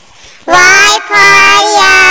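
A child's voice singing the alphabet line "Y for yak": a short phrase starting about half a second in, a brief break, then a longer held phrase.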